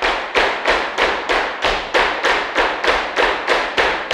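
Flamenco shoes stamping a zapateado on a wooden floor, several dancers in unison, in an even beat of about three strikes a second that rings briefly in the studio.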